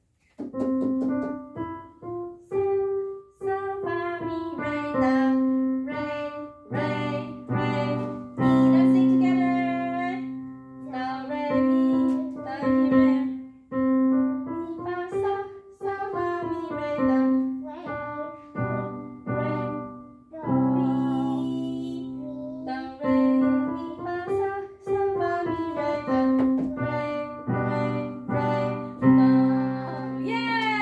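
A simple tune played on a portable electronic keyboard in a piano voice, note by note at an unhurried pace, with a few notes held longer.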